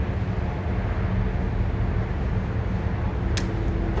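Steady low machinery hum of running rooftop equipment, with a single sharp click near the end.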